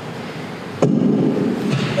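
A sudden knock about a second in, then about a second of loud rustling and rumbling: a handheld microphone being handled as it is passed to the next questioner.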